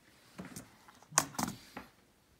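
Handling noise on a desk: a short run of sharp clicks and knocks, the loudest a little past the middle, as the keyboard and camera are moved about.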